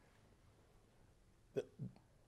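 Near silence, then two short vocal sounds from a person near the end, the second dropping in pitch.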